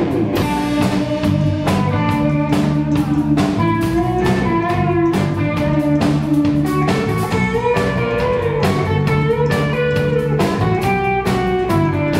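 Rock band playing a guitar-led passage: electric guitar over bass guitar, with a drum kit keeping a steady beat.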